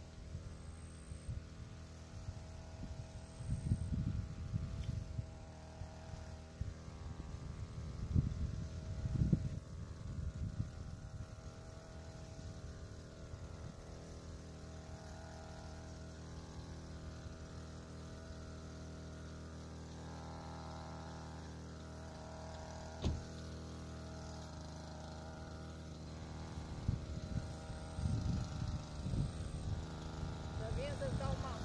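Small engine of a Blade GP 767 motorised backpack sprayer running steadily at a distance while the crop is sprayed. Several spells of low rumble come and go, and there is one sharp click about two thirds of the way through.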